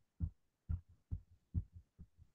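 Soft, faint clicks, about four in two seconds at uneven spacing, from stepping through a chess game's moves on a computer, one click per move.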